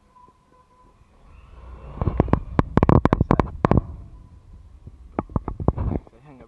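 Two bursts of rapid, sharp snapping clicks over a low rumble. The first starts about two seconds in and lasts nearly two seconds; a shorter one comes near the end.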